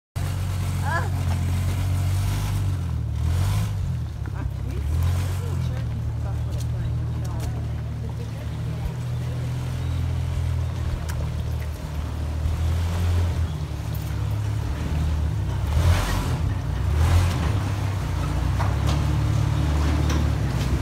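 Jeep engine running at low speed with a steady deep rumble as the vehicle creeps forward, with a few brief louder noisy moments about three seconds in and again near sixteen seconds.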